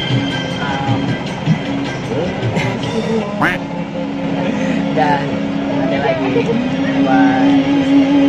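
Inside a medium air-conditioned bus: a steady engine hum under indistinct voices and music.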